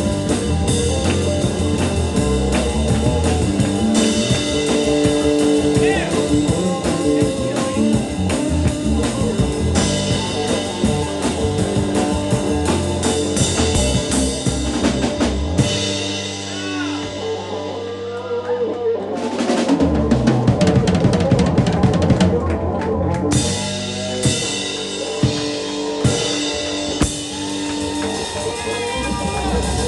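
A live band playing an instrumental passage with the drum kit prominent. Partway through, the low notes thin out for a few seconds, then a run of rapid drum hits comes in before the full band returns.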